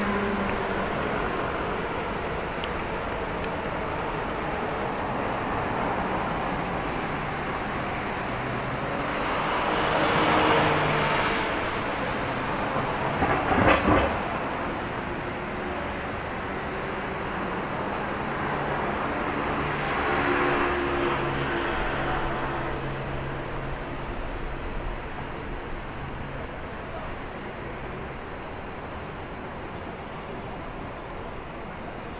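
Steady traffic hum beneath an elevated transit line. A rumble swells and fades twice, about ten and twenty seconds in. In between, about fourteen seconds in, comes a short, loud clatter.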